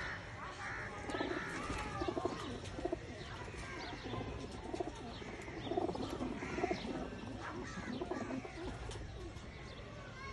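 Domestic flying pigeons cooing over and over, with higher chirping calls mixed in.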